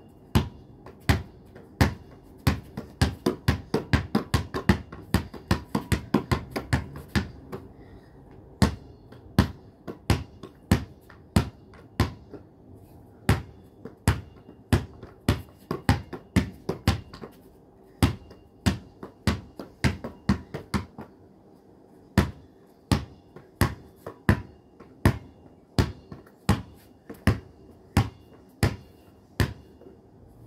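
Basketball dribbled on concrete paving slabs: a long run of sharp bounces, about four a second for the first several seconds, then slowing to roughly one or two a second.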